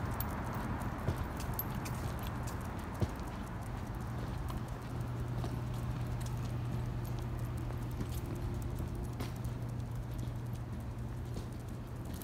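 Light footsteps of a walker and a miniature poodle on a concrete sidewalk, with faint clicking steps, over a steady low hum.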